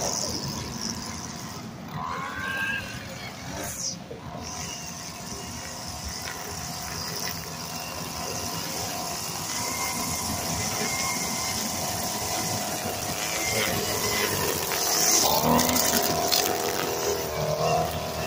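Gas string trimmer engine running while cutting grass, its pitch rising and falling as it is throttled up and down, with a couple of revs early on and again near the end.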